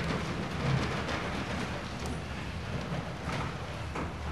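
Steady room noise in a large church hall: an even hiss over a low rumble, with no clear voice or music.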